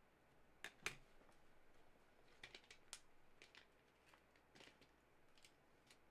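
Faint, scattered clicks and taps of a hard plastic card holder being handled and set down, with one sharper click about a second in and a quick cluster of clicks near the middle.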